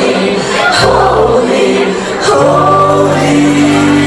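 Live rock band with two women singing; about halfway through, the voices settle into a long held note over a steady bass line.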